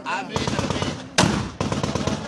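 Rapid bursts of automatic gunfire, celebratory firing at a wedding, with a single louder bang between the two bursts a little past a second in.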